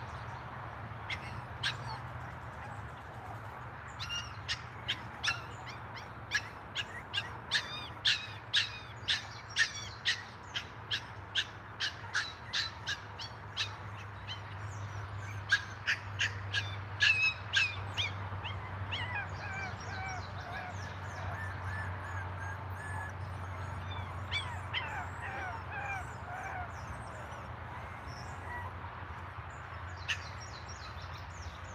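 Birds calling: a rapid series of short, sharp calls, about two a second, from about a second in until about 18 seconds, then softer, gliding calls until near the end.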